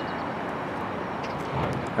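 Steady outdoor background noise, an even hiss and rumble with no distinct event, of the kind distant traffic or light wind on the microphone makes.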